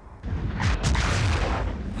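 Film-soundtrack explosion: a sudden deep boom about a quarter second in, followed by a heavy rumble that fades toward the end.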